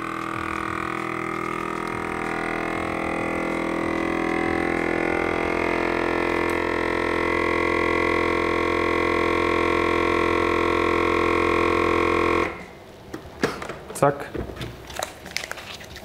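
Caso VC10 vacuum sealer's pump running steadily as it draws the air out of a bag of cooked corn, its hum growing slightly louder; it cuts off abruptly about twelve seconds in, followed by a few clicks and knocks.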